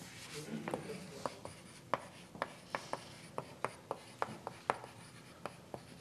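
Chalk writing on a blackboard: a run of faint, sharp taps and clicks, about three a second, as words are written out on the board.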